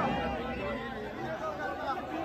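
Low-level indistinct chatter of several voices, with light crowd noise.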